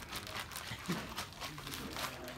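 Plastic bag of plaster and water being squeezed and kneaded by hand to mix it: faint, irregular crinkling and rustling of the plastic.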